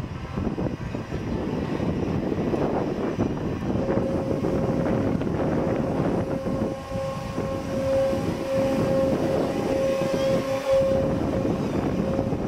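A spinning balloon ride in motion, heard from a gondola: a steady rumble of the running ride with air rushing over the microphone. A steady high tone comes in about four seconds in and fades out near the end.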